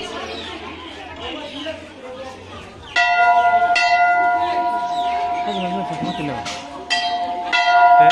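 Temple bell struck four times, in two pairs about three and a half seconds apart, starting about three seconds in; each strike rings on with a steady metallic tone.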